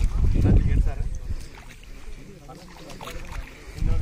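Bare feet wading and splashing through the shallow water of a flooded rice nursery bed, loudest in the first second, with people talking nearby.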